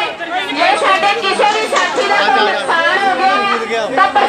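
Loud, overlapping voices of several people talking at once.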